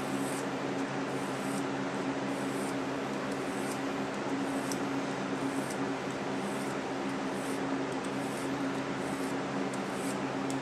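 About a dozen short, faint scraping strokes of a small Swiss Army knife blade drawn along a Gatco Tri-Seps ceramic sharpener, putting an edge back on a dull blade. A box fan hums steadily underneath and is the louder sound.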